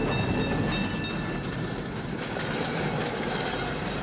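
San Francisco cable car running along its rails, a steady rumble with faint high metallic whines in the first couple of seconds.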